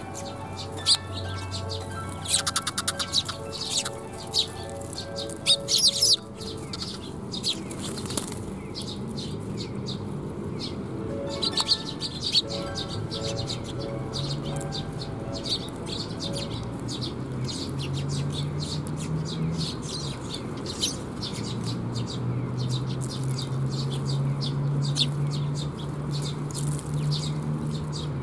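Young Eurasian tree sparrows chirping over and over in short, sharp calls, with wings fluttering as they come to the hand.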